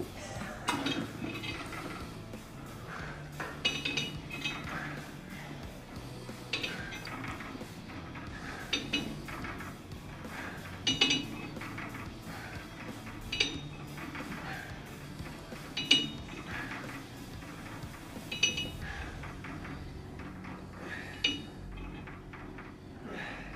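Metal gym weights clinking about once every two and a half seconds, in time with repetitions, over background music.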